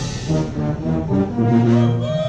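Procession brass band playing, brass notes moving in steps with a longer held note near the end.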